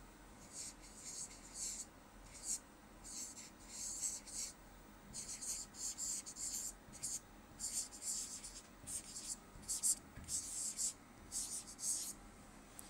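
A pen tip scratching out handwriting in short, irregular strokes, faint and dry, as words are written out letter by letter.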